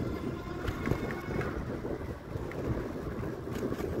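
Wind rushing over the microphone of a camera on a moving bicycle, with the low rumble of the bike rolling along a paved trail.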